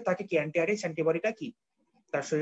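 A man speaking, who stops about one and a half seconds in.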